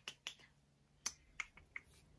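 About five short, sharp clicks at uneven intervals, fairly quiet.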